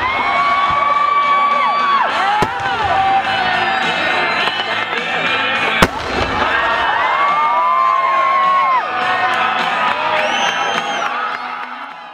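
Fireworks going off, with sharp bangs about two and a half and six seconds in, the second the loudest, over music carrying long held high notes. The sound fades out at the very end.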